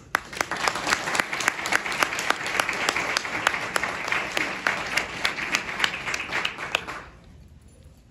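Audience applauding in a hall. The applause starts just after the start, runs for about seven seconds and dies away near the end.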